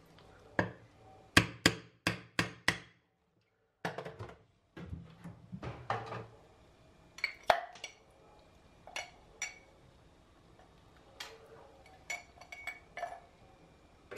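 A run of sharp knocks as a knife laid on a block of clear ice is struck to split it. Later, lighter clinks of ice against a cut-crystal glass as the pieces go in.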